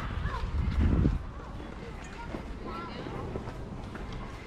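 Children's voices calling in the distance, with low thuds of footsteps in snow that are loudest about a second in.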